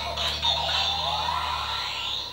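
Yo-kai Watch toy playing a medal's electronic tune through its small built-in speaker, with gliding pitches.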